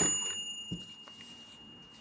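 Bell of a toy cash register ringing as the cash drawer springs open, one clear tone fading away over about two seconds. A faint click comes about three-quarters of a second in.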